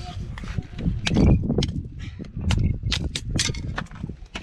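Hatchet splitting small sticks into kindling: a run of sharp wooden knocks, roughly every half second, over wind rumbling on the microphone.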